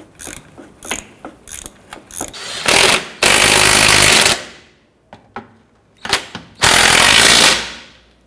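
A hand ratchet clicking a few times, then a Bauer 20V cordless impact wrench running in two loud bursts of about a second each, snugging down engine mount bolts.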